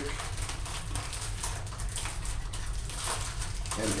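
A plastic wrapper crinkling and crackling in quick, irregular bursts as it is pulled off a new printer ribbon cartridge by hand, over a low steady hum.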